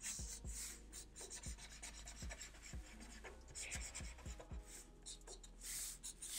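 Black felt-tip marker scratching on paper in short, quick strokes, a few a second, as fur lines are inked. It is faint.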